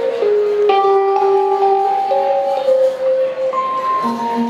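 Live jazz band playing a slow opening without drums: long held notes on keyboard and electric guitar moving every second or so, with a bright struck chord about a second in.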